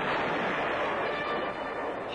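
Cartoon crash sound effect: a dense rushing, rattling noise that slowly fades, as of something being smashed to wreckage.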